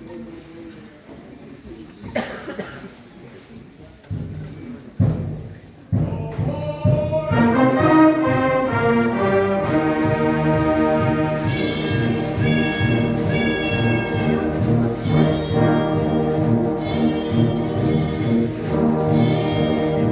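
Concert band beginning a piece: a few separate sharp hits in the first seconds, then about six seconds in the full band comes in loudly, with brass over a steady chugging rhythm, and keeps playing.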